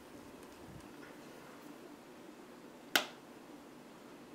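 A single sharp click about three seconds in: the cap popping off a plastic lip balm tube. Otherwise faint room tone.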